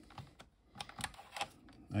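Half a dozen irregular sharp plastic clicks and taps from a Texas Instruments handheld computer being handled, its keys and case worked and a small plug-in RAM cartridge taken out.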